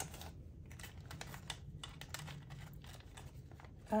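US dollar bills being counted off a stack by hand: a quick, uneven run of papery flicks and rustles as each note is thumbed off.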